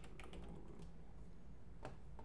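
Faint typing on a computer keyboard: a quick run of keystrokes in the first second, then a single click near the end.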